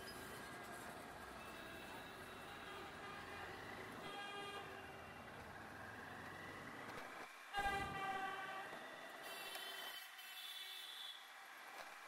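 Street traffic heard from a moving motorcycle: steady engine and road rumble, with vehicle horns honking, briefly about a third of the way in, loudest in a sharp blast about two-thirds through, and again near the end.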